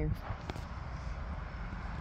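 Steady low outdoor rumble of background noise, with one faint click about half a second in.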